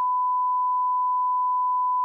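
A steady, pure censor bleep dubbed over the soundtrack, with all other sound cut out, masking a phone number as its digits are read aloud.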